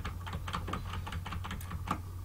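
Computer keyboard keys clicking in a quick, irregular run of keystrokes, several a second, over a steady low hum.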